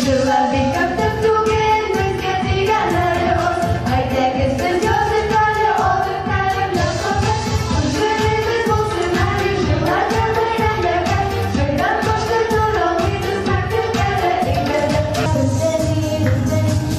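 Young girls singing a melody into microphones over an amplified backing track with a steady beat.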